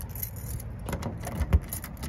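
A bunch of keys jangling and clicking at a door lock, with a sharp knock about one and a half seconds in.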